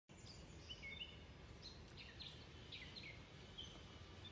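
Faint songbird chirping outdoors: a string of short, falling chirps, a few each second, over a low steady background rumble.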